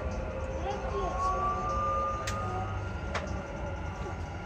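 Dubai Metro train running into a station, heard from inside the car: a steady low rumble with a high motor whine that rises slightly in pitch, and two sharp clicks near the middle and end.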